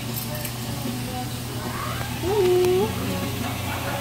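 Indoor restaurant ambience: a steady low hum under background voices, with a short drawn-out vocal sound, rising then held, about two and a half seconds in.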